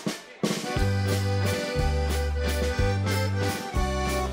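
Folk dance band striking up a song about half a second in: accordion playing the tune over held bass notes and a drum kit.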